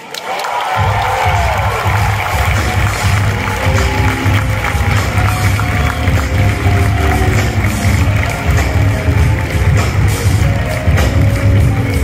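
Audience cheering and applauding, and about a second in a live band strikes up with a heavy bass beat and drums.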